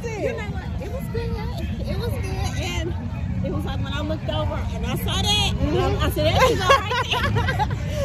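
Several women's voices chatting over one another, with laughter near the end, over a steady low rumble.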